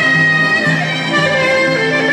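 Live Greek folk band playing an instrumental passage: clarinet, violin and laouto carrying a sustained melody over a steady, repeating low-note rhythm.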